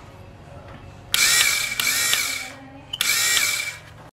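The 12 V DC electric motor of a two-way hydraulic power unit runs in two short bursts, about a second and a half and then just under a second, with a high whine that rises as it spins up and falls as it stops.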